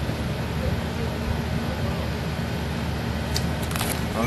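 Steady low background rumble with faint, indistinct voices, and a few short clicks late on.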